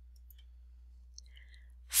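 A few faint, short clicks in a quiet pause over a steady low hum, with a woman's narrating voice starting at the very end.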